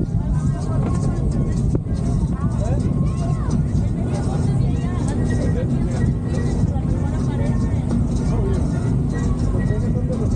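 Tour boat's engine running with a steady low rumble, with indistinct chatter of passengers over it.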